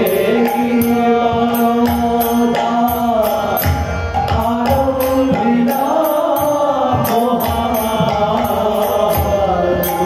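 Bengali padabali kirtan: devotional singing with harmonium, a khol drum and kartal hand cymbals keeping a steady beat.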